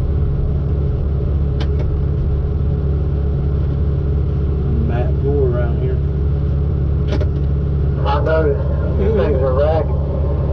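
Log loader's diesel engine running steadily, heard from inside the cab as a constant low drone.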